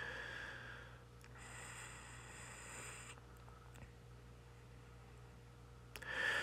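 Quiet room with a person's breathing close to the microphone: two soft breaths in the first three seconds, over a faint steady low hum.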